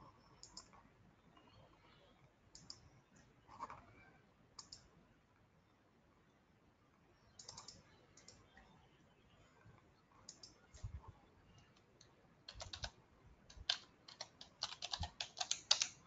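Computer keyboard typing and clicking, faint and sporadic, coming in quicker runs of keystrokes near the end.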